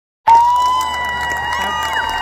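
Large concert crowd cheering and screaming, with one long high-pitched scream standing out above the rest.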